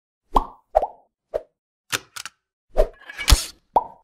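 A run of short hollow pops and sharp clicks, about eight in all, unevenly spaced. The loudest is a thud with a hiss just past three seconds, and the last pop comes just before the end.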